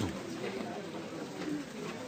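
Indistinct murmur of people talking in a lecture room, no single voice clear.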